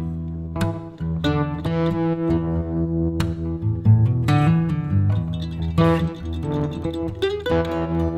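Background music of an acoustic guitar, with plucked notes and strummed chords.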